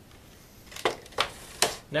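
Three sharp clicks and knocks, about a third of a second apart, as hand tools are handled and set down on a wooden workbench.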